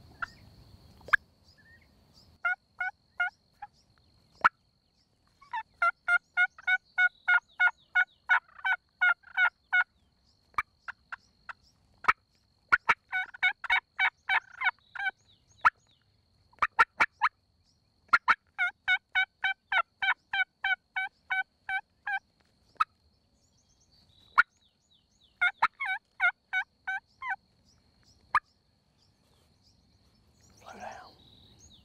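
Wild Rio Grande turkey gobblers gobbling: five bouts of rattling gobbles, some running together, with quiet gaps between them. A few sharp clicks fall in the gaps.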